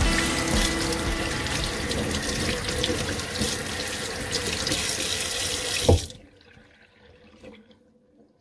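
Kitchen tap running onto a wire-mesh strainer being rinsed in a stainless steel sink, a steady splashing flow. About six seconds in there is a short knock and the water cuts off suddenly as the tap is shut.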